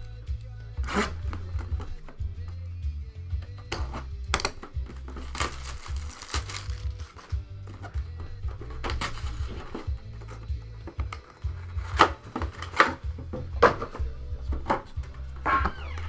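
Background music with a steady beat, over crinkling plastic wrap and short knocks as shrink-wrapped card boxes are picked up, turned over and set down.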